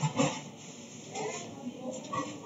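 Short, indistinct vocal sounds in the background: a brief burst at the start and another, with a bending pitch, just past a second in.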